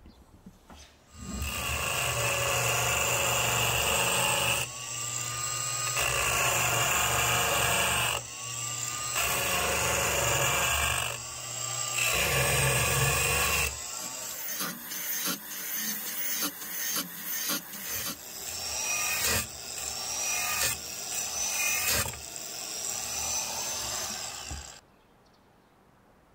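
Angle grinder with an abrasive cut-off disc cutting through a stainless steel knife blade, a steady grinding run that dips and speeds back up a few times. In the second half the sound is sped up into short, choppy bursts, then stops a second before the end.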